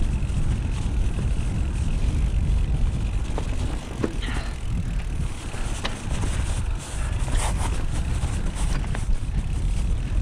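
Mountain bike riding fast down a dirt forest trail: a steady rumble of the tyres rolling over the ground and of wind on the microphone, with scattered rattles and knocks from the bike over bumps.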